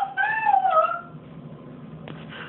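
A toddler's wordless high-pitched squeal: one drawn-out call of about a second that wavers up and then falls in pitch.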